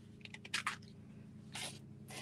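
A bottle of craft paint being opened: a few small crunchy clicks about half a second in and a brief scrape near the end, as dried paint around the cap cracks loose.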